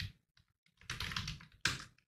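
Typing on a computer keyboard: after a short pause, a quick run of keystrokes about a second in, then one louder keystroke near the end.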